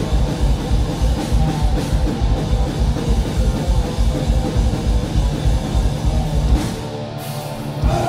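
Thrash metal band playing live, an instrumental stretch: distorted electric guitar riffing over fast, even kick-drum beats. The kick drums stop near the end, leaving the guitars.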